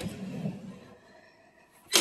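A wooden drawer of a Henredon breakfront sliding open: a click, then a short rubbing slide that fades out within about a second.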